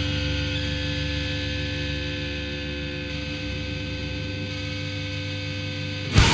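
Distorted electric guitar and amplifier held as a steady humming drone of sustained tones, slowly fading, in a quiet passage of an industrial metal track.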